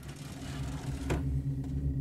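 Steady low hum with room tone, getting slightly louder, with a single sharp click about a second in.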